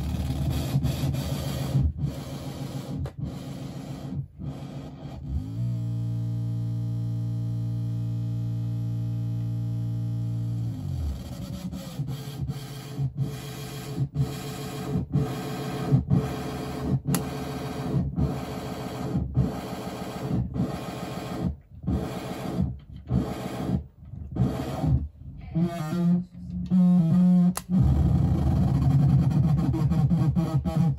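Electronic noise from a modular synthesizer patch run through effects including a Big Muff fuzz: distorted sound chopped into stuttering pulses, about two to three a second. About a fifth of the way in, a steady buzzing drone holds for about five seconds, then slides away as the choppy pulses return. A louder low hum enters near the end.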